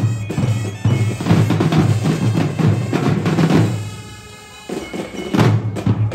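Drum and bugle corps playing: bass and snare drums beating under sustained bugle notes. Just before five seconds in, the drums drop out briefly, leaving a held chord, then come back in.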